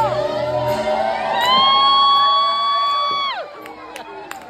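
Live R&B concert: the band's music drops away about a second in, then a single high voice note is held steady for about two seconds and cuts off sharply, with crowd cheering around it.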